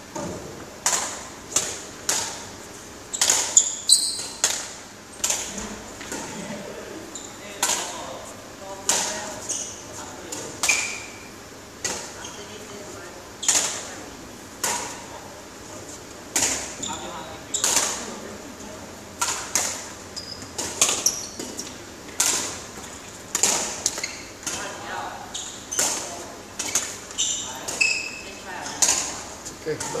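Badminton rally: rackets striking a shuttlecock over and over, sharp cracks about a second apart or less, each with a short echo of the large hall.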